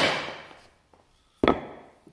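A mallet striking a glued-up wooden cutting-board offcut clamped to a workbench, hit as hard as possible to break it: two heavy blows about a second and a half apart, each ringing out for about half a second.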